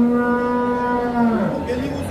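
A cow mooing: one long call held at a steady pitch, which drops and ends about a second and a half in.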